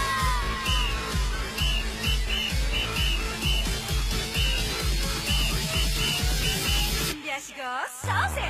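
Electronic dance music with a heavy, even beat and short repeated high chirps. Near the end the bass and beat drop out for about a second under a sweeping sound, then come back in.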